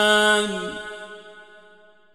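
A male Quran reciter holds a long, steady drawn-out note that stops about half a second in. Its echo then dies away to near silence.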